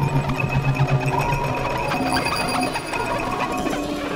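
Experimental noise soundtrack: dense, rapid clicking and crackling over a steady low hum and a thin high tone. The low hum drops out about two-thirds of the way in.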